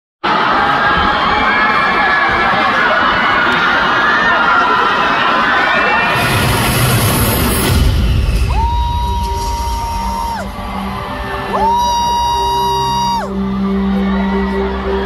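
A concert crowd screaming and cheering, then recorded music starts over the PA about six seconds in: a heavy low hit with a swell of noise, followed by two long held synth tones over a low drone.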